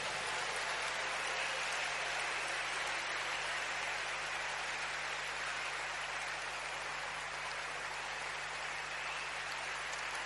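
A large congregation applauding together, a steady rain-like wash of many hands clapping as a call to give a hand of praise is answered.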